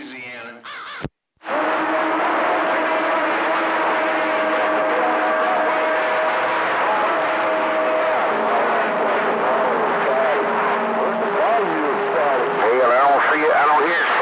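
CB radio receiver on channel 28 putting out a loud wash of static with garbled, indistinct voices and a steady whistle tone over them. The audio drops out completely for a moment about a second in, and wavering warbly tones come in near the end.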